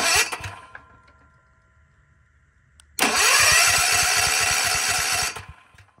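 Generac portable generator's electric starter cranking the engine for about two and a half seconds, with an even chugging pulse, then stopping without the engine catching: it is being cranked unchoked and fails to start. A short loud burst comes right at the start, and a click just before the cranking.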